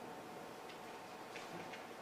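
Quiet room tone with a faint steady hum and a few faint light clicks, three of them spread through the second half.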